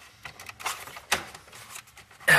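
Plastic center-stack dash trim panel of a Jeep Wrangler being pressed back onto its pressure clips: three sharp plastic clicks about half a second apart as the clips snap into place.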